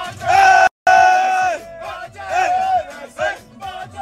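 A group of men chanting and singing loudly together in short repeated phrases over a low beat. The sound cuts out completely for a moment just under a second in.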